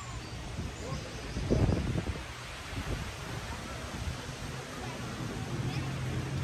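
Outdoor crowd ambience: people talking in the background while wind buffets the microphone in uneven gusts, the strongest about a second and a half in. A low steady hum comes in near the end.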